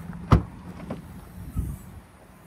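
Rear liftgate of a Kia Sportage being unlatched and opened: a sharp latch click, then a few lighter clicks and a dull thump as the hatch swings up.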